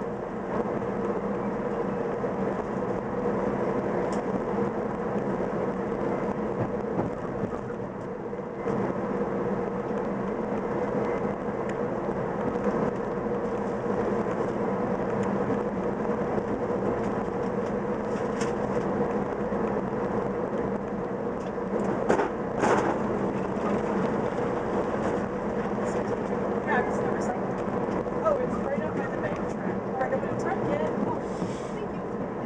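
Running noise heard from inside a moving VIA Rail passenger train: a steady rumble with a constant low hum, broken by a few light clicks and one sharper knock a little past two-thirds of the way through.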